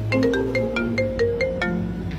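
Mobile phone ringtone playing a quick marimba-like melody of struck notes, several a second: an incoming call.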